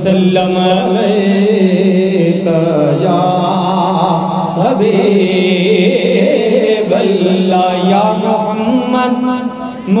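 Male voices chanting a naat, an Urdu devotional song in praise of the Prophet: a long melodic sung line that rises and falls over a steady held low tone, with a short break just before the end.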